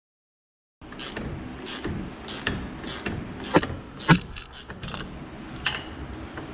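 Wrench clicking in a steady ratchet rhythm, about two clicks a second starting about a second in, as the forcing bolt of a pulley puller is turned to draw the pulley off a power steering pump shaft. Two louder metallic clanks that ring briefly come a little past halfway.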